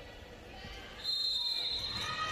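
Sports-hall ambience at the opening face-off of a floorball match: quiet at first, then about halfway through the hall sound rises and a steady high tone comes in.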